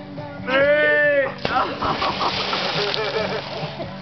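A long shout, then a woman thrown into a swimming pool hits the water with a big splash about a second and a half in, the spray and churning water going on for about two seconds under laughter.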